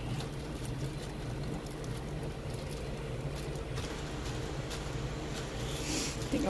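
A steady low hum throughout, with faint soft handling noises in the first few seconds.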